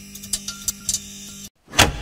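Logo intro sting: a steady low hum with scattered clicks that cuts out about one and a half seconds in, then one loud hit that dies away quickly.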